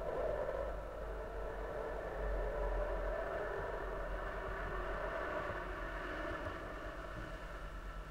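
Steady rushing air noise as the unpowered space shuttle orbiter Atlantis glides in on final approach with its landing gear down, swelling a couple of seconds in, over a faint low hum.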